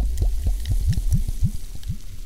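Liquid bubbling in a title sound effect: a quick run of short, low, rising blips, about four a second, easing off toward the end.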